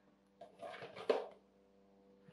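A cardboard box being handled and turned over: a brief rustle and scrape about half a second in, ending in a sharper knock near the middle. Under it is a faint steady hum.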